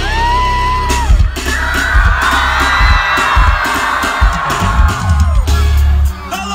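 Loud live concert sound heard from inside the audience. A held pitched tone slides up at the start, then heavy bass hits come over the crowd's screaming and cheering.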